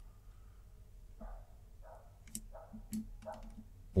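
Quiet room tone with a few faint clicks of a computer mouse, bunched together in the second half.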